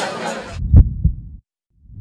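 A low sound-effect thump in pairs, two beats about a quarter-second apart, in the channel's end-logo sting. The pair starts again near the end.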